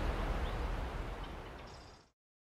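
Outdoor field ambience, a low rumble with an even hiss and a few faint high bird chirps, fading out steadily to silence.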